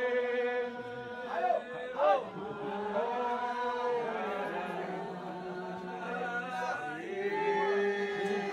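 A congregation singing a slow chant-like hymn in long, held notes, with two brief loud cries rising over the singing about one and a half and two seconds in.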